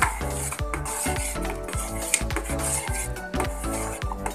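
A utensil stirring a liquid gulaman mixture in an aluminium pot, scraping and clinking against the pot's sides again and again, over background music.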